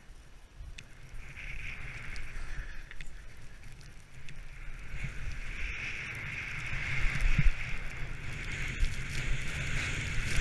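Skis hissing and scraping over packed, groomed snow while wind rumbles on a helmet-mounted camera's microphone during a downhill run. Both grow louder as speed builds, loudest from about halfway through.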